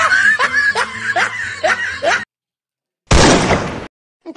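A person laughing in short repeated bursts for about two seconds, then a sudden cut to silence, followed near the end by a loud, brief rush of noise.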